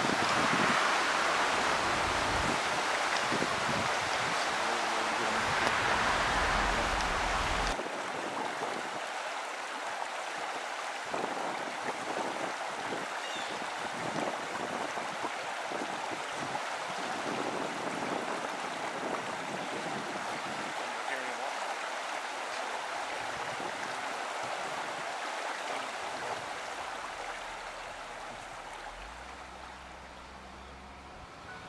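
A vehicle driving through a shallow, stone-bottomed creek: a steady rush of water churned up by the tyres, with low knocks from the bumpy ride over the creek bed. It is louder for the first several seconds, then drops abruptly about eight seconds in.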